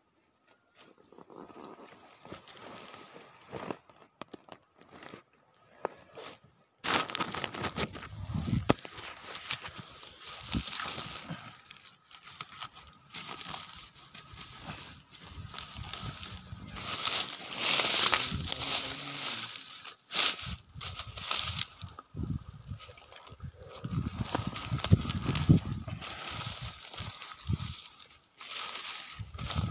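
Close, irregular rustling and crackling of leaves, dry straw and plastic mulch being handled by gloved hands while weeding. It is faint for the first several seconds, then turns loud about seven seconds in and keeps coming in uneven bursts.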